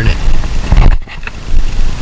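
Heavy low rumble that drops away for about half a second near the middle, with faint irregular scraping as a Phillips screwdriver turns the height-adjustment screw in a metal drawer slide.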